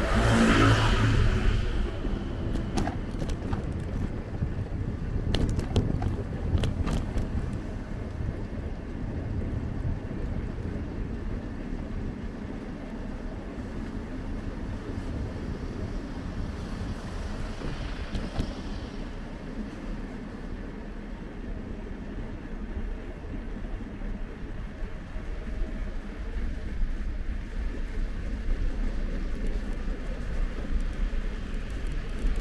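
A motor scooter's engine passing close by in the first second or so, then a steady low rumble of wind and road noise from a moving bicycle, with a few sharp clicks a few seconds in.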